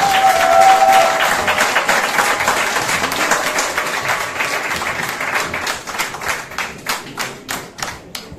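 Audience applause at the end of a folk-music piece: dense clapping that thins out into scattered single claps over the last couple of seconds. A short held call sounds over it in the first second.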